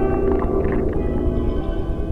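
Live experimental electronic music: a deep, dense bass rumble under several long held tones, with short flickering sounds above them.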